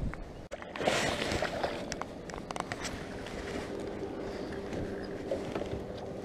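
Knocks, clicks and a brief rustle from movement and handling inside a small jon boat, over a faint steady hum.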